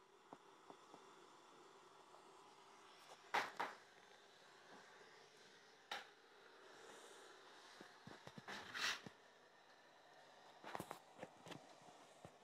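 Faint steady hiss with a low hum, broken by scattered knocks and clicks of handling: a few single knocks, then a quick cluster near the end.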